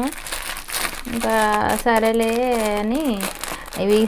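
Plastic grocery packet crinkling as it is handled, mostly in the first second and again shortly before the end. A woman's voice sounds in between.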